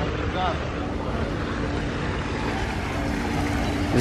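Outdoor poolside ambience: a steady rushing noise with a low rumble and a faint steady hum, with faint voices about half a second in.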